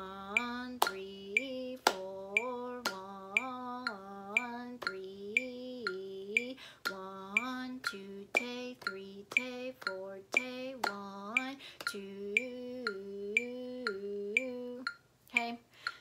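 A woman counting the beats aloud in a sing-song voice, stepping between two notes on each syllable, while clapping a rhythm over the steady clicks of a metronome. She is counting and clapping the rhythm of a bassoon exercise before it is played.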